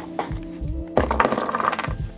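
Background music, with crinkling plastic packaging and a few light clicks and knocks as washi tape rolls and a sticker sheet are handled and set down on a wooden desk; the crinkling is strongest in the second half.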